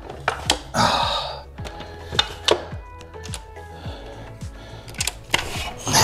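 Adjustable dumbbells clicking and clanking as their weight setting is changed in the cradles and they are lifted out. There is a run of irregular sharp clicks and knocks throughout.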